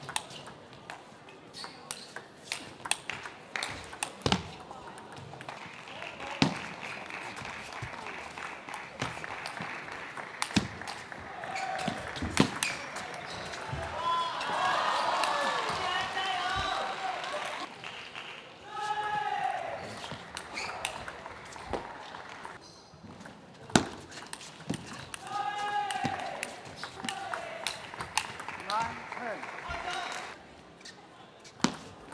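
Table tennis rallies: the celluloid ball clicking off the players' bats and bouncing on the table in quick, irregular series of sharp clicks. Loud voices shout and cheer after points, around the middle and again later on.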